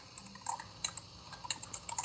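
A quick, irregular run of light clicks and taps, about a dozen in two seconds.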